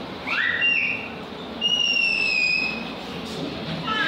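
High whistles: a short rising whistle about a third of a second in, then one long, slightly falling whistle lasting about a second, with more whistled notes starting near the end.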